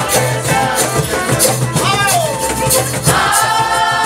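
Live folk music: several people singing together over guitar and double bass, with a steady rhythmic accompaniment.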